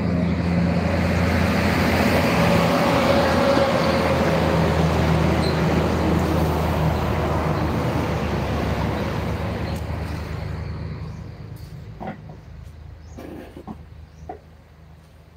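A heavy truck pulling a flatbed semi-trailer passes close by on the road. Its low engine drone and tyre noise swell over the first few seconds, then fade away from about ten seconds in.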